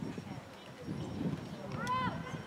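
Distant voices of players and spectators across a soccer field, with a louder shout near the end.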